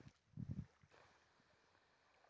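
Near-silent lakeside ambience with a short burst of low, muffled bumps on the phone's microphone about half a second in.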